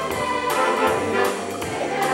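A high school band playing live, the brass to the fore, with sustained chords and new notes entering about every second.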